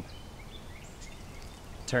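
Steady outdoor background noise in a pause between spoken lines, with a few faint high chirps. A man's voice starts again at the very end.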